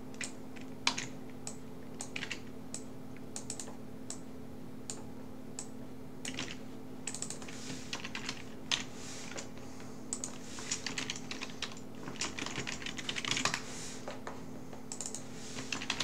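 Typing on a computer keyboard: irregular keystrokes, scattered at first, then quick runs from about six seconds in, busiest a little before the end. A steady low hum runs underneath.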